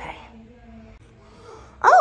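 A domestic cat meows once near the end, a short call that rises and then falls in pitch, as it comes up to a person.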